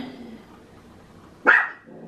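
A dog barks once, a single short, loud bark about one and a half seconds in.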